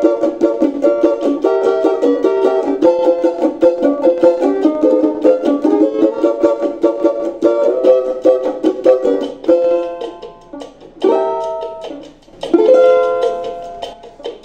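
Oliver Brazilian banjo (four-string cavaquinho-neck banjo with a 10-inch pot) being played: quick, steady strumming of a tune for about ten seconds, then a few separate strummed chords left to ring near the end. It sounds loud and bright.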